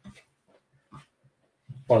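A short pause in a man's talk, holding only a few faint, brief low hums and breath sounds from the speaker, before he resumes speaking near the end.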